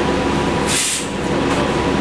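Interior hum of a New Flyer XN40 Xcelsior CNG bus's Cummins ISL-G engine, steady throughout, with a short hiss of released air from the bus's air system about three-quarters of a second in.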